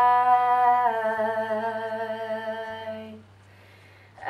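Female voice singing one long held note that steps slightly lower about a second in, then fades out a little after three seconds, over a faint backing track.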